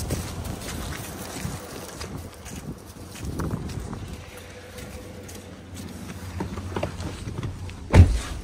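Footsteps crunching through dry grass and leaf litter, with rustling from a handheld camera and a low rumble underneath. Scattered knocks, and a heavy thump near the end.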